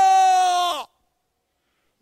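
A man's loud chanted voice through a microphone, holding the last syllable of a line as one long, high note. The note sags in pitch and cuts off suddenly a little under a second in.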